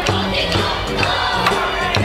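Bon odori dance music with a drum beat about twice a second, and the voices of the dancing crowd joining in with shouts.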